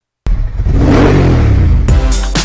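An engine revving, starting abruptly and swelling, laid over the intro logo; music with a drum beat cuts in near the end.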